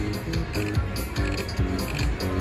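Mo' Mummy slot machine's bonus-round music: a melody of short electronic notes stepping up and down over a low beat, playing during the last free spin.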